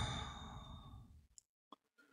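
A man's exasperated sigh: one long breathy exhale that starts sharply and fades over about a second, at having mixed up which stock chart he was showing. A few faint clicks follow near the end.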